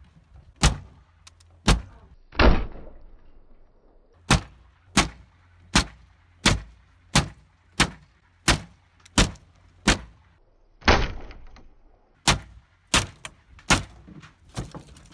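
Repeated heavy blows against a painted wooden board wall from behind, the boards cracking and splintering as they give way. The blows land about every two-thirds of a second, and two longer, splintering hits come a couple of seconds in and again near eleven seconds.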